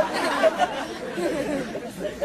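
Audience laughing and chattering in response to a joke, the many overlapping voices gradually dying down.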